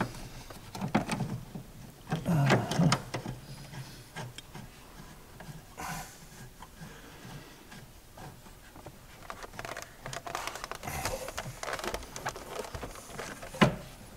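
Hand work on a car's seat belt retractor and webbing at the door pillar: scattered plastic clicks, knocks and rustles, busier in the second half, with a sharp click just before the end.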